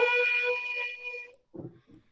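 A woman's singing voice holding the last note of a line at a steady pitch, fading out a little over a second in, then a short pause.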